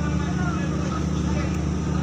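Steady low hum of a ship's machinery running.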